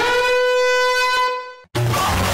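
A cartoon character's voice letting out one long, high, held yell that rises briefly and then holds steady in pitch. It cuts off about three-quarters of the way through, and a loud, garbled, noisy choking sound starts just before the end.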